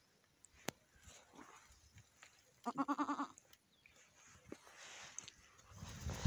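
A goat bleating once, a short wavering bleat of under a second about two and a half seconds in.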